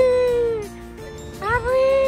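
Background music with steady held notes, over which a high voice sings or calls two long notes that rise, hold and fall, one at the start and another about halfway through.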